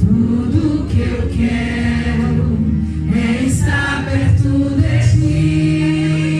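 Live worship music: voices singing a Portuguese worship song through microphones over sustained low accompaniment.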